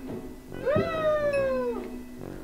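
A single meow-like call, about a second long, rising quickly and then sliding slowly down in pitch, over light background music with short bell-like notes.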